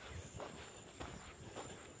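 Faint footsteps of a person walking on a dirt road, soft irregular steps, with a steady high-pitched tone in the background.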